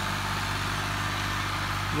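Ghazi tractor's diesel engine running steadily under load as it pulls a multi-tine cultivator through dry soil.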